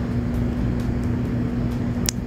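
Steady low hum with a single held tone underneath, level throughout.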